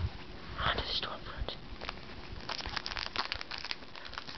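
Pokémon booster pack's foil wrapper crinkling and tearing as it is pulled open by hand, with a dense run of small crackles in the second half.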